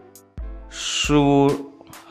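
A voice saying one slow, drawn-out syllable, over faint steady background music.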